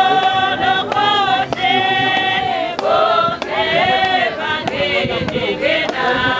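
Congregation singing a hymn together in long held, gliding notes, with a regular sharp beat underneath.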